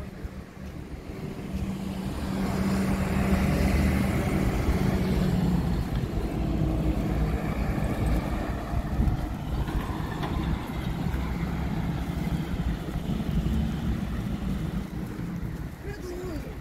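Road traffic on a village street: vehicle engines, a truck among them, humming as they pass. The sound swells about two seconds in and stays loud.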